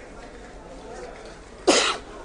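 A single loud cough close to a microphone near the end, over a low background murmur.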